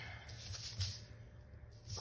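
Paper rustling and sliding as planner pages covered in stickers are turned and shifted on a tabletop. The rustle is heaviest right at the start, then comes in a few short, softer patches.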